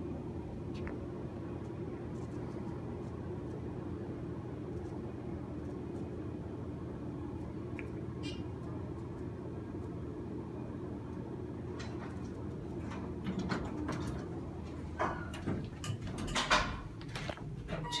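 Steady low hum while the elevator is awaited, then, from about 12 seconds in, the doors of a Dover Impulse hydraulic elevator opening, with scattered clicks and knocks as the car is boarded.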